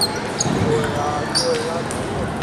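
Table tennis balls clicking off bats and tables in a large gym hall, as scattered irregular clicks over a background of crowd chatter.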